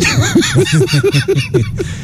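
A person laughing in a quick run of short 'ha' pulses, about five a second, tailing off near the end.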